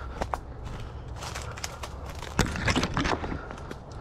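Footsteps crunching through patchy snow and dry leaf litter, with irregular sharp cracks and rustles of twigs and brush. A louder crack comes a little past halfway.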